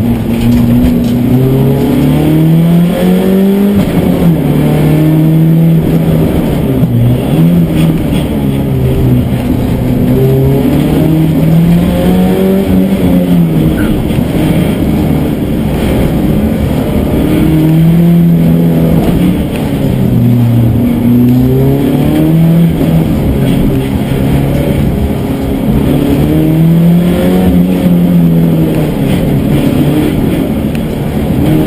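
Opel Astra F GSi 16V's four-cylinder 16-valve engine, heard from inside the cabin, driven hard. The revs climb and fall again and again every few seconds as the car accelerates and slows between cones.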